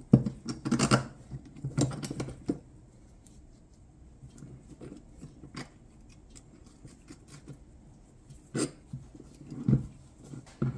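Steel parts of a homemade pin spanner wrench (flat bar arms, bolted pins and hinge) clinking and knocking together as they are handled and set down on a workbench. A cluster of knocks comes in the first couple of seconds, then a few faint ticks, and two more knocks near the end.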